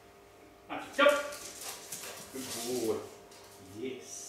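Black Labrador vocalizing: a loud, sharp bark about a second in, followed by further shorter, lower vocal sounds.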